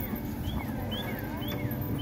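A bird chirping over and over, short high notes that slide up and then down, repeating about twice a second, over a steady low outdoor rumble.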